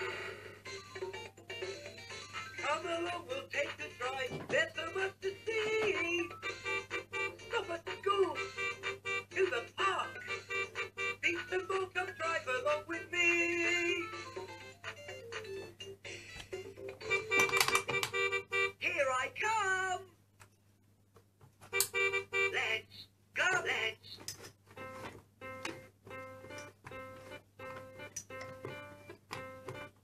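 VTech Tiny Tot Driver toy playing its electronic melodies and sound effects with a recorded voice after being switched on. It falls silent briefly about two-thirds of the way through, then plays a steady repeating tune.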